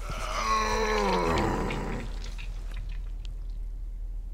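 A drawn-out, animal-like groan lasting about two seconds, sliding steadily down in pitch and fading out.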